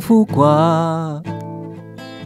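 A man singing a worship song to his own acoustic guitar: one held, wavering sung note in the first second, then strummed guitar chords ringing on alone after the voice stops.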